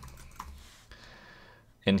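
Computer keyboard typing: a few light, quick keystrokes as a word is typed in.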